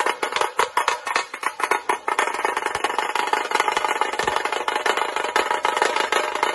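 Tasha drums struck with thin cane sticks in rapid strokes. The strokes run together into a dense, continuous roll from about two seconds in.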